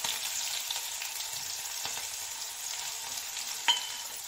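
Chopped onion and green chilli frying in hot mustard oil in a kadai: a steady sizzle with small crackles, and one short clink near the end.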